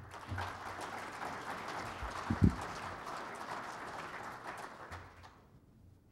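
Audience applause that dies away about five seconds in, with one low thump about two and a half seconds in.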